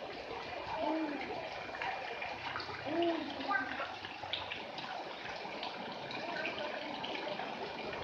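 Swimming pool ambience: steady running and splashing water with faint, distant voices of people in the pool.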